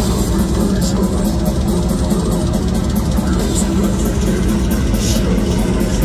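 Death metal band playing live, loud and dense: heavily distorted electric guitars over drums, with rapid, even cymbal strokes running through.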